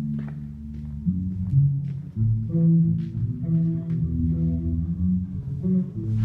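A band playing live, the electric bass loudest: a line of low held notes that change pitch every half second or so, with other instruments fainter above it, heard in a large room.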